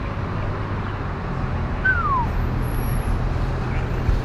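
Car driving through city traffic with a window down: steady engine and road noise. Just before the midpoint, a single short squeak slides down in pitch.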